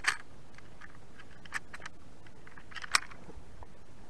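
Sharp plastic-and-metal clicks and rattles as a digital hanging fish scale is handled and its hook is clipped into a largemouth bass's jaw for weighing. A few scattered clicks, the loudest just before three seconds in, over a steady faint hiss.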